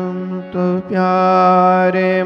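Male voice singing a devotional kirtan in long, held, ornamented notes over a steady droning accompaniment, with a brief break in the singing about half a second in.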